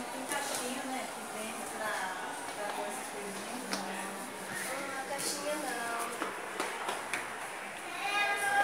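Quiet, indistinct voices with no clear words, running on and off.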